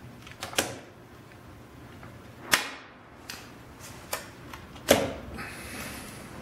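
A few sharp mechanical clicks and knocks, the loudest about two and a half seconds in and near the end, then a steady whir that sets in just before the end as the Fuling inverter is switched on and powers up.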